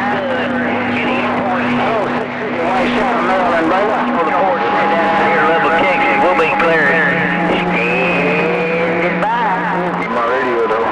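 CB radio receiving distant skip stations on channel 28: several garbled voices talking over one another through static. Steady carrier whistles sit beneath them, changing pitch about four seconds in and again near the end.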